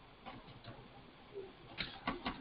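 Faint computer keyboard keystrokes: a few scattered clicks, with a quick pair near the end.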